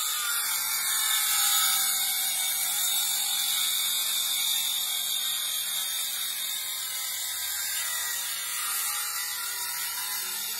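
Makita 18V cordless circular saw running and cutting through a pine board, a steady high-pitched whine of blade and wood, with a vacuum cleaner hose fitted to the blade guard to draw off the sawdust.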